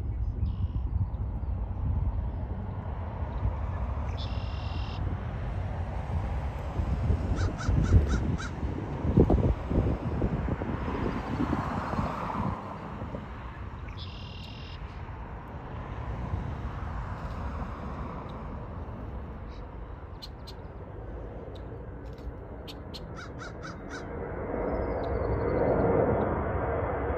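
Twin-engine jet airliner taking off and climbing out, a low rumble that is loudest about eight to ten seconds in and then eases. A bird calls twice over it, about four and fourteen seconds in.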